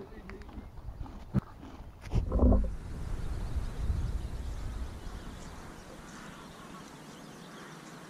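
Outdoor field sound near grazing Konik horses, with wind rumbling on the microphone. About two seconds in comes a louder low rumble with a short, low call in it. A steady rushing follows and dies away by the second half.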